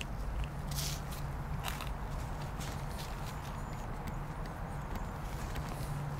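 Gloved hands digging and sifting through loose potting soil on a plastic tarp, with scattered rustles and crackles as small red potatoes are felt out of the dirt, over a steady low hum.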